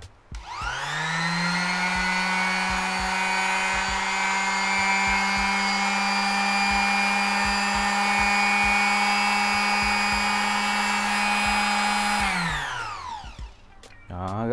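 Makita square-pad finishing sander switched on and running unloaded in the hand: its motor winds up to a steady high whine within the first second, runs evenly, then is switched off near the end and winds down.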